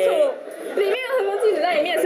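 Speech: a woman arguing in Mandarin.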